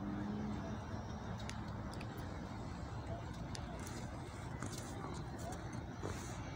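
Quiet outdoor city background: a steady low rumble with a few faint clicks.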